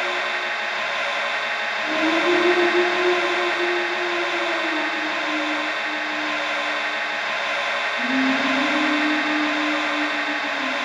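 Experimental sound-collage music made from heavily processed, looped recordings of jingling keys, voice and body percussion: a dense ringing, hissing wash over a low held tone that comes and goes, sliding to new pitches every few seconds. The low tone swells loudest about two seconds in and again from about eight seconds.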